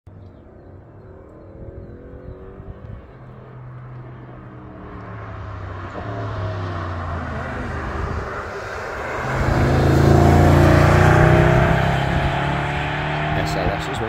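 A sports car's engine approaching at speed, growing louder to its loudest about ten seconds in as it passes, then fading as it pulls away.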